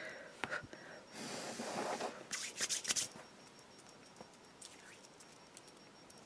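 Rustling and crinkling from close handling for about two seconds, starting about a second in, then a few faint ticks over quiet room tone.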